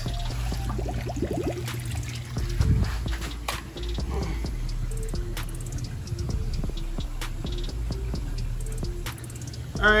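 Background music with steady low notes and held mid-range notes, with a few sharp clicks.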